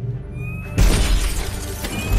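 Film sound effect of a hand repulsor firing: a brief rising whine, then a sudden loud blast just under a second in, with glass shattering, over an orchestral-style music score.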